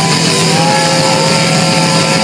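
Live rock band playing loud: distorted electric guitars holding long notes over a steady low bass note and drums.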